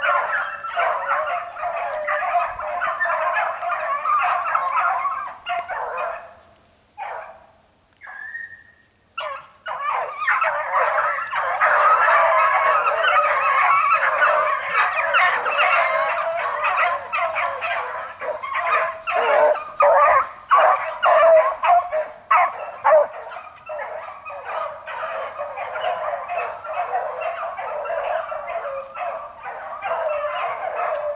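A pack of beagles baying in chorus as they run a cottontail rabbit on its scent. The baying breaks off briefly about six seconds in, then comes back louder.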